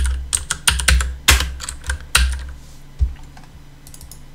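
Computer keyboard typing: a quick run of keystrokes over the first two seconds or so, then one more keystroke about three seconds in.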